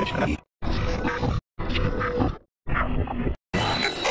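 A short, heavily processed audio snippet with grunt-like vocal sound, looped and stuttering. It repeats about once a second, and each repeat starts and cuts off abruptly with a brief silence between.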